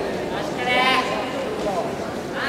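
Shouted voice calls in a large gymnasium: one drawn-out call rising and falling in pitch about half a second in, and a shorter one near the end, over a steady hubbub of hall noise.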